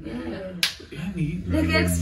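People talking, with one sharp smack of hands about half a second in.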